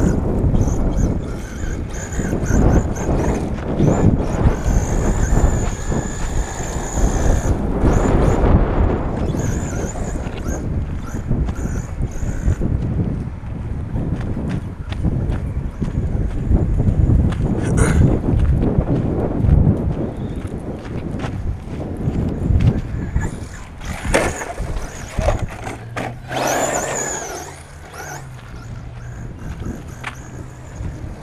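Onboard sound of a radio-controlled 4x4 truck driving over a dirt track: heavy wind and rumble on the microphone, with a high motor whine that comes and goes and a rising whine near the end.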